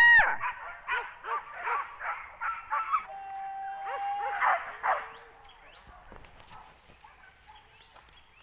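Boar-hunting dogs barking and yelping in a rapid run, with one long drawn-out call about three seconds in. The calls trail off to faint after about five seconds.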